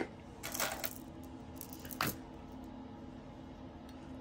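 Jewelry being handled: a sharp click, a short jingle of metal chain and beads, and another click about two seconds in, over a faint steady hum.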